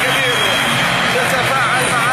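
Arena crowd cheering and shouting in a steady, loud roar of many voices, with some high shouts or whistles near the end.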